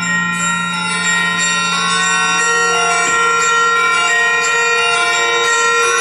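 Concert wind band playing, with bell-like metallic percussion striking a series of ringing notes over a steady held low note.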